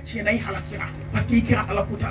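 A woman's voice preaching into a handheld microphone, in short emphatic phrases, over a steady low hum.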